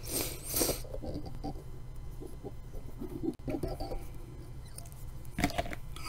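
Faint rustling and small ticks from hands handling thread and tools at a fly-tying vise, over a steady low hum.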